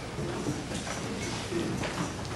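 Thin Bible pages being turned, the paper rustling briefly about the start and again near the end, with a couple of soft low hums in between.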